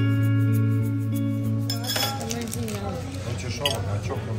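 Background music with steady held tones for about the first two seconds, then an abrupt change to a busy dining room's noise: voices and the clinking of dishes and cutlery, with a few sharp clinks near the end.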